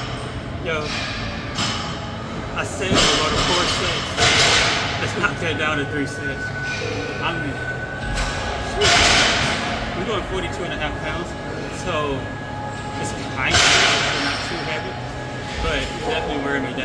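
Gym room noise in a large hall: indistinct voices of people talking, with occasional thuds and knocks of equipment and a few brief louder rushes of noise.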